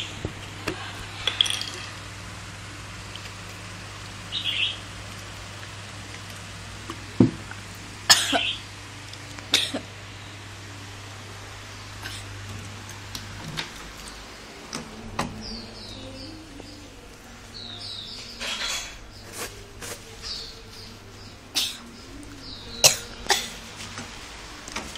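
A person coughing and clearing the throat in short, scattered fits after swallowing a mouthful of dry powder. A low steady hum in the background stops about halfway through.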